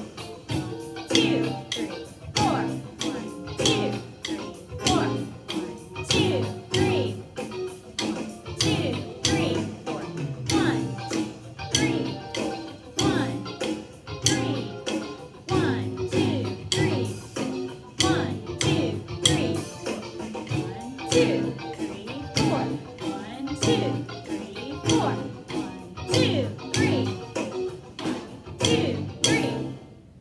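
Snare drum struck with sticks in a steady beat, some strokes hit harder as accents, over a pitched play-along accompaniment track.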